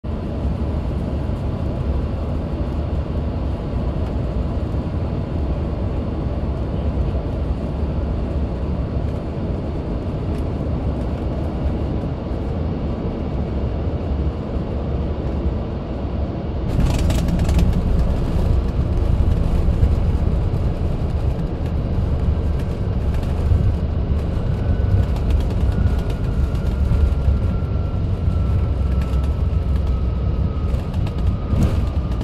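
Cabin noise inside an Embraer ERJ-145 regional jet landing: a steady low rumble of airflow and its rear-mounted Rolls-Royce AE 3007 turbofans. About halfway through, the sound turns suddenly louder with a brief rattle as the wheels touch down. The louder rumble of the rollout follows, with a faint whine falling slowly in pitch near the end.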